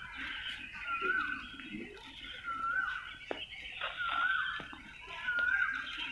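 A bird repeating a short call that rises and falls, about once a second.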